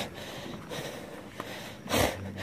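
Faint footsteps on a wooden boardwalk, then a short, loud puff of breath near the end.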